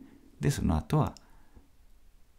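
Speech only: a voice says a short phrase about half a second in, then pauses with faint room tone.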